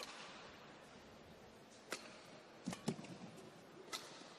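Badminton rackets striking the shuttlecock in a rally: a sharp crack at the start, the loudest, likely the serve, then further hits spaced about a second apart through the middle, over a quiet hall.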